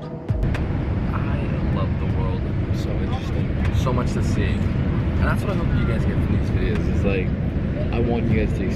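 Steady airliner cabin noise in flight, the low rush of engines and air, cutting in sharply just after the start, with a voice talking over it.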